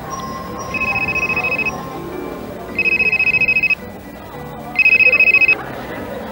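Cellular phone ringing with an electronic trilling ring: three rings about a second long, a second apart, each louder than the last.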